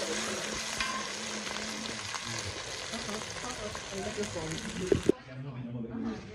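Food sizzling and frying in hot palm oil in a pot while a metal ladle stirs it, with small scrapes and clicks. Two sharp knocks come near the end, and then the frying sound cuts off suddenly about five seconds in.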